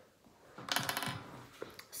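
Plastic clicks and a short rattle of a whiteboard marker being handled and its cap worked open, a quick run of small clicks lasting under half a second, then one more small click.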